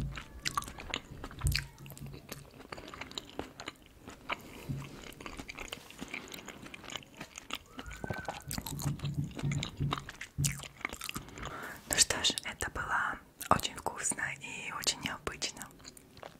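Close-miked chewing and wet mouth sounds of someone eating shrimp fried rice, with many sharp clicks.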